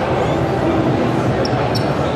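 Steady crowd hubbub, many voices talking at once, echoing in a large, busy indoor hall.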